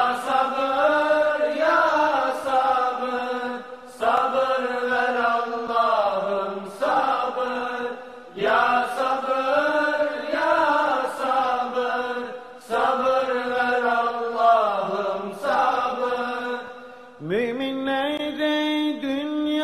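Unaccompanied voices singing a Turkish ilahi (devotional hymn) without instruments, in long melismatic phrases that break off about every four seconds.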